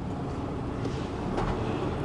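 Inside a lorry cab on the move: the HGV's diesel engine and road noise, a steady low rumble.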